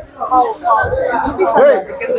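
People talking close by, with a short hiss about a quarter second in.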